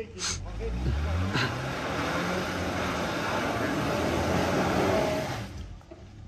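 Tank 300 SUV's engine revving hard under load on a steep mud climb. It rises in pitch over the first second, holds at high revs with a loud rushing noise, then drops off about five and a half seconds in.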